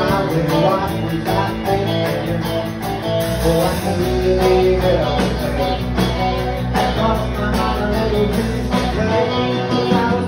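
Live country band playing: a drum kit keeping a steady beat under electric and acoustic guitars, with a held low bass note through the middle of the stretch.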